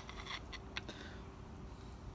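A few faint, light clicks of a tool working at a camshaft seal on a Honda B16 cylinder head to pry it out.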